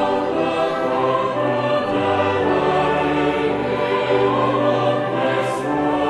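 Choir singing an early Baroque psalm setting in held, slowly changing chords, over a low accompaniment of renaissance dulcians and sackbuts.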